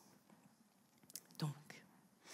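Quiet room tone, then a woman's voice says one short word a little past halfway.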